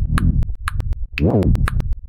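Programmed electronic beat: fast, evenly spaced drum-machine hi-hat ticks over an 808-style synth bass line, with a swooping bass note about a second in.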